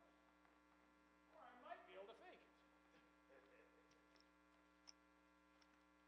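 Near silence: a faint, steady electrical hum, with a brief faint murmur of a voice about a second and a half in.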